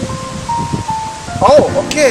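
Background music: a short run of three steady electronic tones stepping down in pitch, then a singing voice coming in just past the middle.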